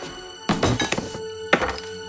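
Two heavy thunks about a second apart as the hinged head of a bust is handled, a hidden mechanism being worked, over a dramatic film score.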